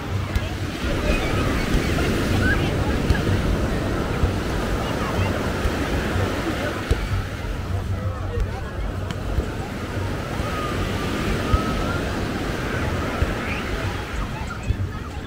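Small waves breaking and washing up the sand in a steady wash of surf, with wind rumbling on the microphone. Distant voices of people on the beach are mixed in.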